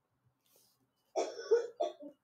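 A person coughing: a short run of about three coughs starting about a second in.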